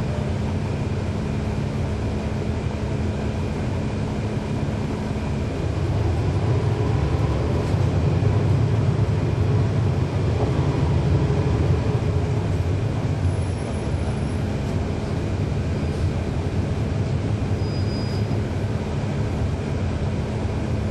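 Cummins ISL9 inline-six diesel engine of a NABI 40-foot transit bus, heard while the bus is moving, with next to no transmission whine. The engine pulls harder and grows louder from about six seconds in, holds for several seconds, then eases back to a steadier drone.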